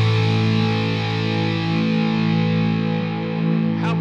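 Rock music: a distorted electric guitar chord held and left to ring, slowly fading.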